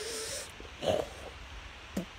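A man's breath close to the microphone: a breathy hiss at the start, then a louder, sharp exhale about a second in.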